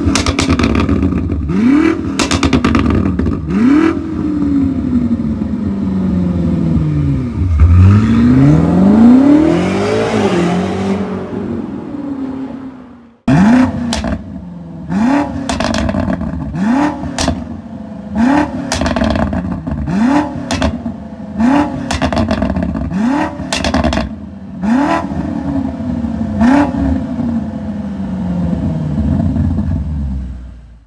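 BMW M5 Competition (F90) 4.4-litre twin-turbo V8 through a custom sport exhaust, free-revved while standing still in repeated quick blips. Each blip rises sharply and falls away, with pops and crackles as the revs drop. There is one longer rev about eight seconds in, then after a break a run of about a dozen blips roughly a second and a half apart.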